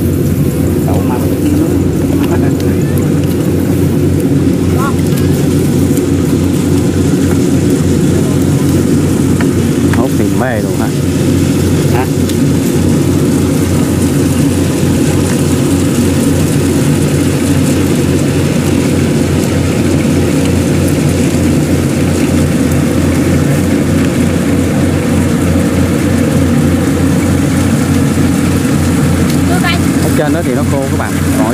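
Kubota DC70 Pro combine harvester running steadily under load while driving and cutting rice: its diesel engine and threshing machinery make a loud, even, unbroken drone.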